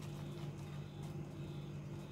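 Crushed almonds tipped from a small ceramic ramekin into a glass bowl of cream mixture, giving faint soft taps and rustles over a steady low background hum.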